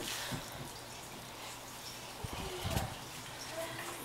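Faint water dripping and trickling from a soaked wool yarn skein as it is lifted out of a pot of water, with a few soft knocks a little past the middle.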